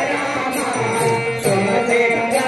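Devotional group singing of a Rama bhajan, with a percussion beat about twice a second.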